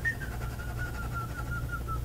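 A person whistling one long, quiet note that sinks slightly in pitch and then holds, wavering a little, over a steady low hum.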